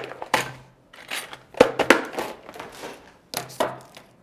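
Rummaging in a pink plastic storage box for a pair of scissors: a series of short rattling and scraping handling noises, plastic and metal knocking about.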